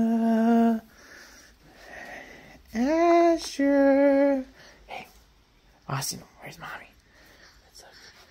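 A voice calling out in a drawn-out sing-song, two long held syllables, then the same call again about three seconds in. A few short knocks or taps follow in the second half.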